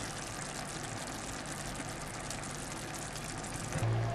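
Tomato sauce with olives simmering in a frying pan, a steady soft sizzle with fine bubbling crackle.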